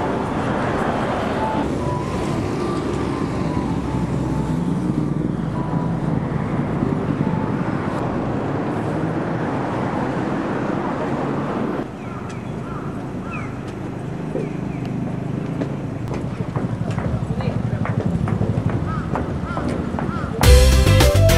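Busy street ambience: many people's voices talking at once, with passing road traffic. The sound changes suddenly about twelve seconds in. Short chirps are heard in the second part.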